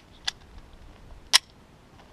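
Two sharp metallic clicks about a second apart, the second louder, from a 9mm semi-automatic pistol being handled and readied to fire.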